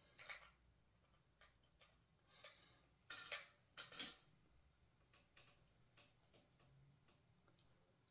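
Near silence broken by a few faint plastic clicks and brief rustles as wireless earbuds are handled and fitted into their charging case. The two loudest clicks come about three and four seconds in.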